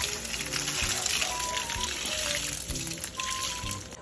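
Rinse water from washing raw rice poured out of a pot, splashing steadily onto soil and plants, with light background music.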